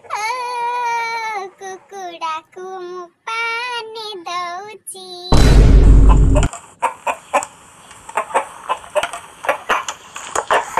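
A high-pitched comic voice sings in short phrases. A little over five seconds in, a loud boom lasting about a second cuts it off, and a quick run of short sharp sounds follows.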